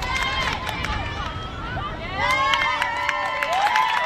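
Several high voices shouting and calling out at once on a women's football pitch, players and sideline spectators overlapping, with long drawn-out calls in the second half.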